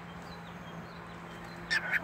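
Steady low hum of a quiet room, with a couple of brief faint bird chirps near the end.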